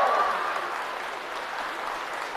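Audience applauding, with the tail of a man's voice at the very start.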